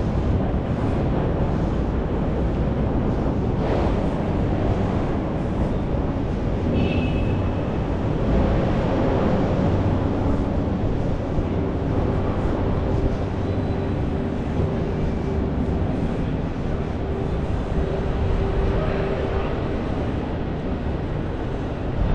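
City street traffic noise: a steady low rumble of vehicles, with a faint hum held for several seconds in the second half and a brief high-pitched squeak about seven seconds in.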